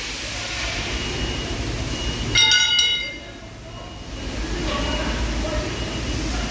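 Steady low workshop rumble, with one brief, high-pitched, horn-like tone about two and a half seconds in, lasting about half a second.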